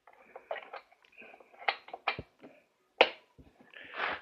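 Scattered light clicks and knocks of hand work on a Vespa scooter engine as the spark plug is refitted, about half a dozen irregular taps with the sharpest about three seconds in.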